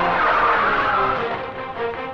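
A van smashing through a wooden gate: a loud, noisy crash over dramatic film music, dying away after about a second so that only the music is left.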